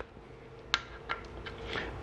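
Quiet workshop room tone with a couple of light metallic clicks, the sharpest about three-quarters of a second in, as a ratchet with an 8 mm hex bit is handled and fitted into the cap on the motorcycle engine's side cover.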